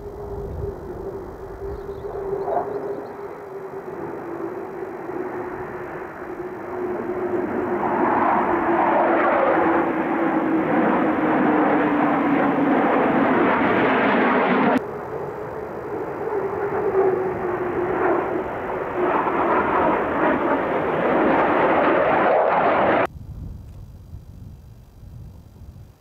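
Jet engine noise from an F-15: a steady whine slowly falling in pitch, with a loud rushing roar building about a third of the way in. The sound cuts off abruptly about two-thirds of the way through, returns, and cuts off abruptly again near the end.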